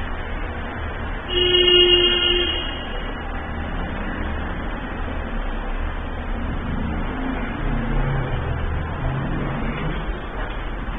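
A Hyundai elevator car arriving at the ground floor, with a low rumble and hum of its running machinery. About a second in, a steady horn-like tone sounds for about a second and a half and is the loudest sound.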